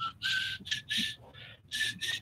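Soft, breathy whistling in a run of short notes, each a few tenths of a second, the pitch stepping slightly from note to note.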